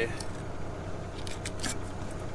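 Dexter 8-inch Sani-Safe fillet knife cutting through a black rockfish along its ribs and spine, heard as a few faint scraping cuts over a steady low hum.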